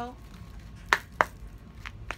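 A deck of tarot cards being handled in the hands, with two sharp card taps about a second in, a quarter second apart.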